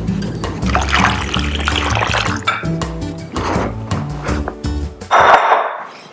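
Chicken broth poured from a glass bowl into a blender jar of vegetables, splashing over a bed of background music. A louder splashy burst comes near the end, just as the music stops.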